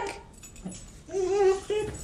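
Siberian husky 'talking': a short call at a fairly level pitch about a second in, then a brief second sound near the end.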